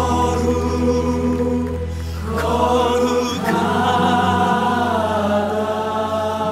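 A slow Korean worship song: voices sing long held notes over a steady low accompaniment.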